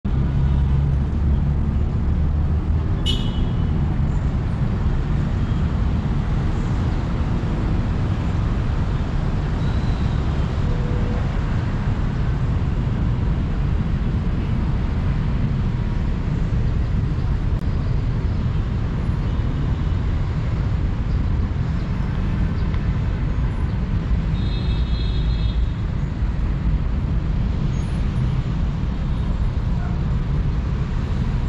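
Road traffic from cars and motorcycles passing, a steady low rumble throughout. A brief high-pitched sound cuts through about three seconds in, and another short high tone comes around twenty-five seconds in.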